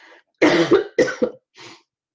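A woman coughs twice, about half a second apart, then takes a faint breath.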